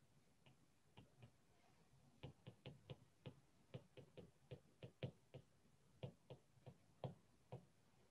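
Faint, irregular clicks and taps of a stylus on a tablet during handwriting, about two to three a second, starting in earnest about two seconds in.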